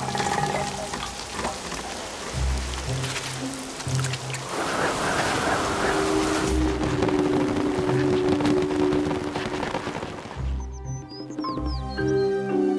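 Background music over steady falling rain. The rain cuts out about ten and a half seconds in, leaving the music, with a few short high chirps near the end.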